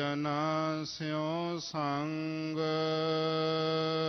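A man's voice chanting Gurbani verses in a slow melodic recitation, the pitch sliding between short phrases, then settling into one long steady held note a little past halfway.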